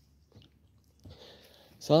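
Faint mouth clicks, then a soft breathy noise like an intake of breath, before a man's voice begins loudly near the end.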